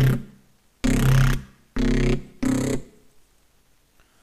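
Distorted neuro bass synth patch with saturator, chorus, Camel Crusher distortion and a short reverb, played on a MIDI keyboard. A held note fades out just after the start, then three short stabs come about a second, two seconds and two and a half seconds in, each with a brief reverb tail.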